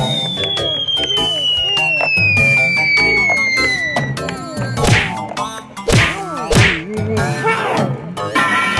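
Cartoon sound effects: a long whistle sliding steadily downward over about four seconds, over a string of short springy pitch glides, then three sharp whacks between about five and seven seconds in.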